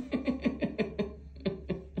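Quick run of laughter: short bursts at about seven a second, each falling in pitch.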